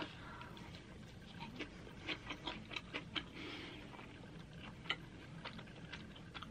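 Quiet biting and chewing of a slice of thin, crisped flatbread pizza: faint crunches and wet mouth clicks, clustered between about one and a half and three seconds in and again near five seconds.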